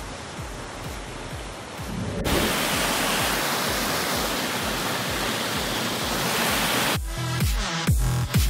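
Water rushing over boulders in a rocky river cascade, a steady even rush that comes in about two seconds in. It sits between stretches of electronic dance music, whose beat drops away at the start and returns about seven seconds in.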